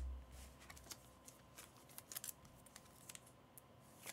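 Faint clicks and rustles of trading cards being handled and stacked by hand, with the fading low rumble of a thud against the desk at the very start.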